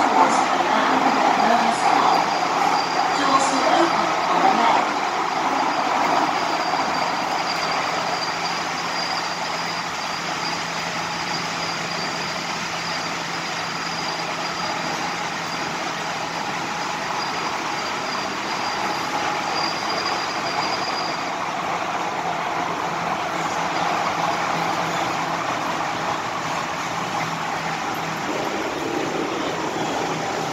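Hong Kong MTR M-Train electric multiple unit running, heard from inside the passenger car: a steady rumble of wheels and running noise. A thin, high-pitched steady whine rides over it and stops about two-thirds of the way through.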